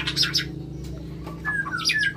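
White-rumped shama chirping at the start, then a few short gliding whistles near the end, the calls of a male courting a female. A steady low hum runs underneath.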